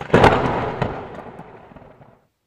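Lightning-strike sound effect: a sudden loud crackling blast, with a second sharp crack just under a second in, fading away over about two seconds.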